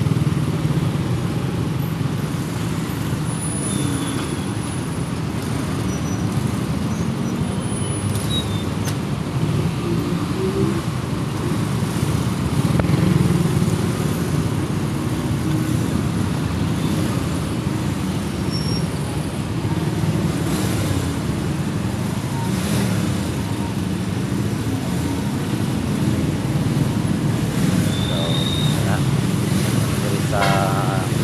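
Slow city traffic heard from among motorcycles: a steady low rumble of small motorcycle engines and cars idling and creeping forward.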